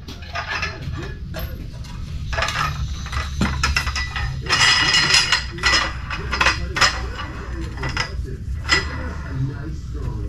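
Repeated metallic clinks and rattles of a tall screw-type under-hoist support stand being set in place and its threaded post cranked up by its T-handle under an engine oil pan. The clicks come thickest in the middle.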